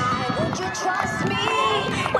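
People's voices mixed with background music.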